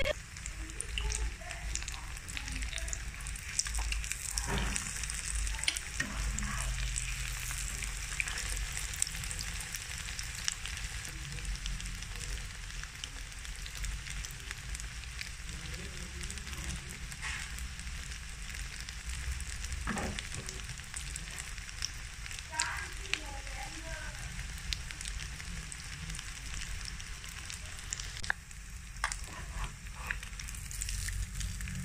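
Breaded kebabs shallow-frying in hot oil in a pan: a steady sizzle with scattered pops and crackles, and a few sharper clicks near the end.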